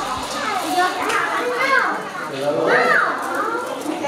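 Children's high-pitched voices calling out and chattering as they play, with two rising-and-falling cries, one under two seconds in and one near three seconds.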